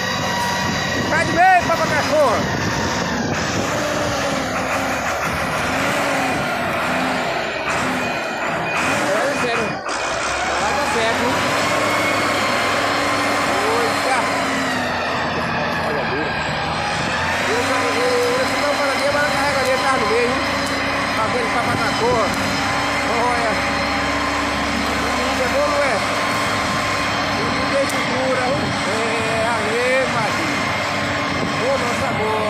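Valtra tractor's diesel engine working under load, hauling trailers loaded with sugarcane. The engine note climbs about ten seconds in, then holds steady.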